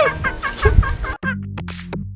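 A hen clucking in a quick run of short calls that stops abruptly about a second in, followed by low sustained music notes.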